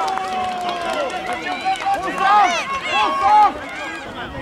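Several men's voices shouting and calling out across a football pitch, overlapping one another, loudest between about two and three and a half seconds in.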